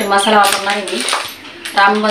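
A tin measuring can handled in a basin of flour, giving a few light knocks and clinks, interleaved with a woman's voice.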